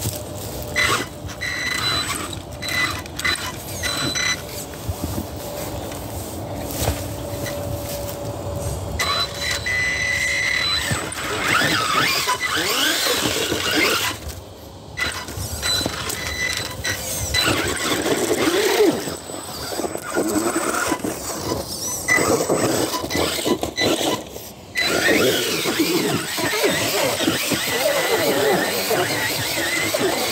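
Axial Ryft RBX10 RC rock bouncer's electric motor and drivetrain whining in bursts as the throttle is worked, the pitch wavering up and down, with tires scrabbling and knocking on rock as it climbs a rock ledge. The first few seconds hold mostly scattered clicks. After that the whine runs almost without a break, dropping out briefly twice.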